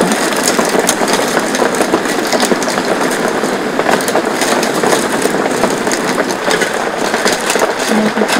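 Heavy rain pelting the tent fabric in a dense, steady patter, with cockle shells clicking as they are stirred with a wooden spoon in a stainless pot of hot water.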